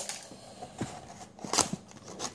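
A small cardboard box being opened by hand: the flap pulled free with light rustling and a few sharp cardboard clicks, the loudest about a second and a half in.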